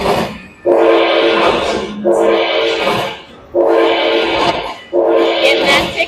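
Aristocrat Dragon Link Panda Magic slot machine playing its bonus-collect sound: a bright chord of steady tones rings out four times, about once every second and a half. Each chord marks a fireball prize being added to the win meter at the end of the hold-and-spin bonus.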